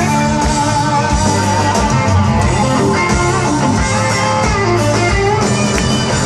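Live country band playing an instrumental break: a guitar-led melody over bass and drums.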